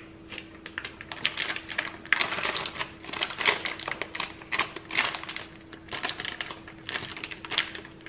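Disposable plastic piping bag crinkling and crackling in quick, irregular bursts as it is handled, filled with buttercream frosting and squeezed down toward the tip.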